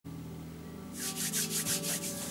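Quick rhythmic rubbing or scraping strokes, about five or six a second, starting about a second in, over a steady low hum.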